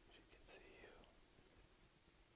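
A faint, brief whisper lasting under a second, over near silence.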